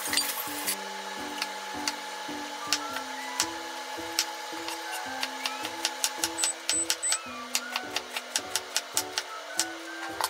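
Kitchen knife cutting an eggplant on a mango-wood cutting board: a series of sharp knocks of the blade meeting the board, starting about three seconds in and coming several a second near the middle. Background music with a repeating melody plays throughout.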